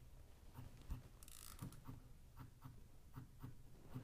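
Soundbrenner Pulse wearable vibrating metronome buzzing faintly in a swing rhythm: triplets with the middle pulse left out, giving repeating pairs of short pulses in a long-short pattern.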